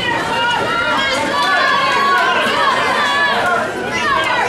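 Boxing spectators shouting and talking at once, many voices overlapping in a large hall.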